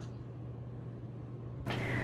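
Steady low hum of room tone with a faint hiss and no distinct events. A woman's voice starts near the end.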